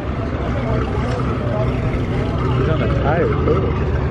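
A car engine idling with a steady low rumble, under the chatter of people talking nearby.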